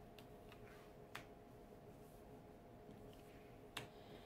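Near silence: a few faint taps of tarot cards being picked up and laid down on a table, the clearest about a second in and near the end, over a faint steady hum.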